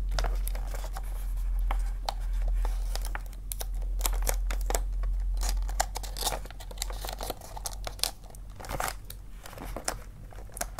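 Wrapping paper crinkling and rustling in quick irregular crackles as it is folded and creased around a gift box by hand. A low steady rumble sits underneath for the first three-quarters or so, then fades.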